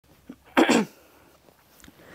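A single short, loud burst of a person's voice, about a third of a second long, about half a second in, falling in pitch.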